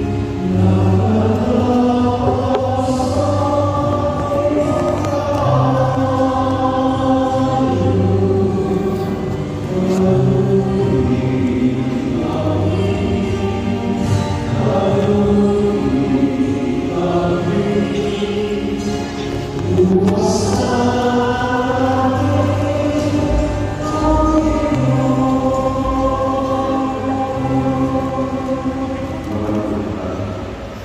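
A choir singing a slow hymn in a church, with long held notes over steady low accompanying notes.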